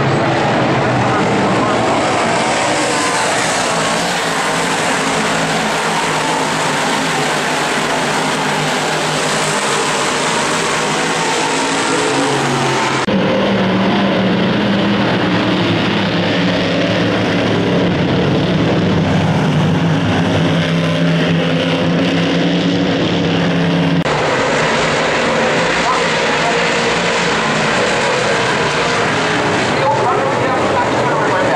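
Dirt modified race cars' V8 engines running at speed around the oval, a loud steady mass of engine noise. The sound cuts abruptly about 13 and 24 seconds in. In the middle stretch the engine note of cars passing close by comes through more strongly.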